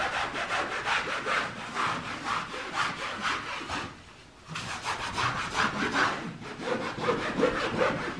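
A wall being scrubbed by hand, quick back-and-forth rubbing strokes, with a short pause about four seconds in before the scrubbing resumes.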